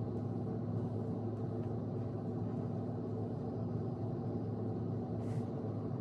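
A steady low hum with a few held tones in it, a machine running in the room, unchanging throughout.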